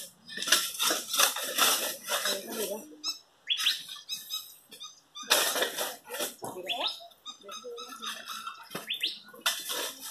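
Shovels and a pick digging into dry, stony soil: repeated scraping and striking strokes in bursts, with a few short rising squeaks in between.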